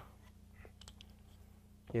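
Chalk on a blackboard while a curve is drawn: a few faint taps and scrapes between about half a second and a second in.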